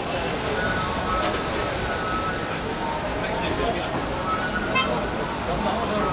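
Steady outdoor street din: indistinct voices over the running noise of road traffic.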